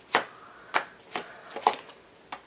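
Tarot cards being handled and drawn from a spread on a table: four short card clicks and flicks, about half a second apart.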